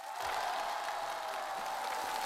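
Studio audience applauding and cheering, starting suddenly, with one long high-pitched note held above the noise.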